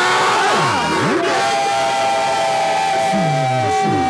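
A large congregation cheering and shouting together, many voices overlapping, with one long held high note from about a second in to the end.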